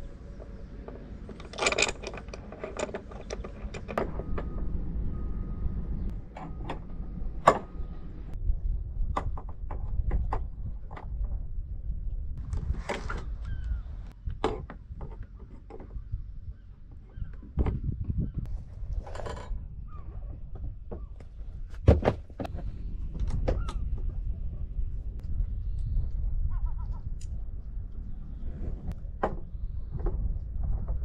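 Irregular metallic clicks and knocks of mounting fittings being handled and fastened onto a sailboat's stainless steel pushpit rail, over a low rumble.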